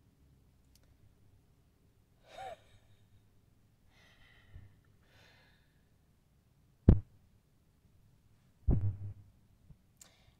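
A woman's breathy sighs and a short vocal sound, without words. A sharp knock about seven seconds in is the loudest sound, followed by a duller thump near nine seconds.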